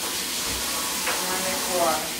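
Kitchen faucet running into the sink, a steady hiss of water.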